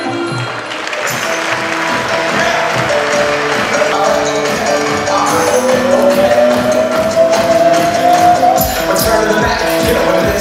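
Background music with a steady beat; a long held note glides slowly upward in the second half.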